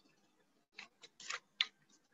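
A few faint, quick clicks and scrapes, bunched together in the second half: handling noise from a wired earphone microphone being fiddled with.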